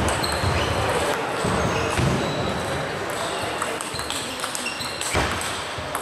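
Table tennis rally: a celluloid ball clicking sharply off bats and table in quick exchanges, with voices from the hall behind.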